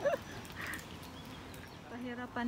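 A shouted "hallo" greeting cuts off just after the start. Then there is faint outdoor background with a brief faint call a little under a second in, and no clear event.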